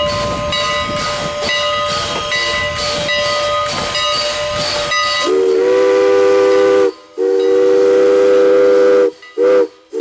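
Strasburg Rail Road #89 steam locomotive working past with its exhaust chuffing about twice a second over a steady hiss. About halfway through, its chime whistle sounds several notes together in two long blasts and a short one: the opening of the long-long-short-long grade-crossing signal.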